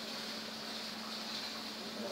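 Steady background noise with a faint low hum: ambient room tone between spoken passages, with no distinct event.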